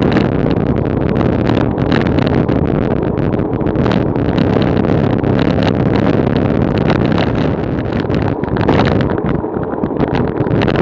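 Wind buffeting the microphone of a camera moving along a road: a loud, steady rush broken by many short gusts.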